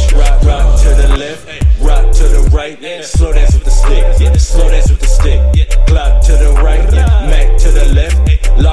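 Trap beat with heavy 808 sub-bass and rapped vocals over it. The bass cuts out briefly twice in the first three seconds.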